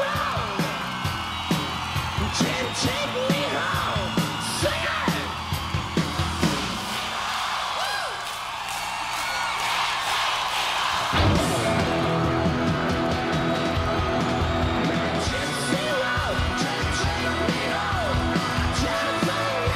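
Live rock band playing on stage, with whooping vocal yells over the music for the first several seconds; the sound thins out, then about eleven seconds in the full band comes in suddenly and plays on loudly.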